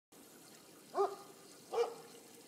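A dog barks twice, two short yelps, about a second in and again near the end.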